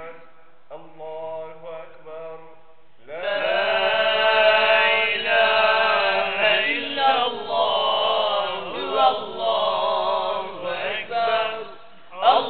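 Melodic Quran recitation by a man's voice, chanted in long held and ornamented phrases. It is quieter for the first few seconds, then grows loud and full from about three seconds in, with a second male voice nearby chanting along.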